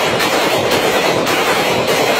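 A dense, unbroken barrage of rapid loud bangs and crackles, too fast to count, running for several seconds.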